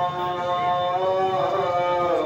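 A man's voice chanting a noha, a Shia mourning lament, into a microphone, drawing out long held notes; near the end the pitch slides down.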